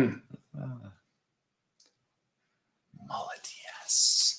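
A man gives a brief hum and chuckle, then there is a pause of silence. About three seconds in, quiet murmured or whispered voice sounds follow, ending in a short loud breathy hiss.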